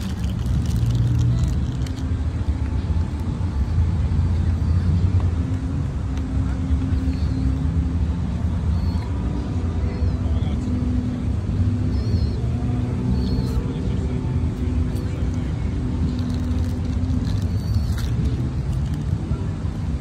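Steady low rumble of city traffic with a constant engine hum, with a few faint, short, high chirps now and then.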